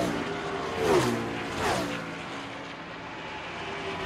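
Race cars passing by at speed, each engine note dropping in pitch as it goes past; several pass in quick succession over a steady background of engine noise.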